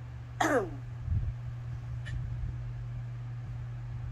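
A person clears their throat once, a short falling voiced sound about half a second in, over a steady low hum.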